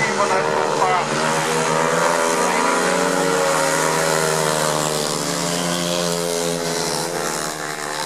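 Speedway motorcycle's single-cylinder 500 cc methanol-fuelled engine running hard through a bend on the shale track, a loud steady note that sinks slightly in pitch as the bike pulls away.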